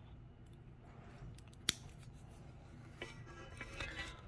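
A wristwatch and its leather strap being handled while it is put on the wrist: one sharp click about halfway through, then a few faint clicks and rustling near the end.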